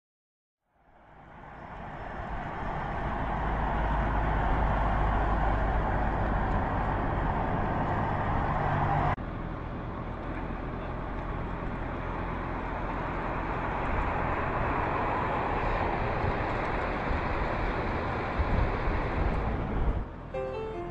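Pickup truck driving on a road: steady engine and tyre noise that fades in about a second in and drops abruptly in level about nine seconds in.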